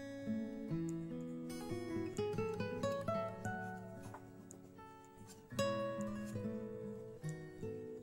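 Background music: acoustic guitar playing a melody of plucked notes and chords, with a louder chord about five and a half seconds in.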